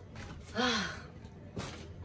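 A woman's breathy sigh with a falling pitch, about half a second in, followed a second later by a short light knock as a gift box or bag is handled.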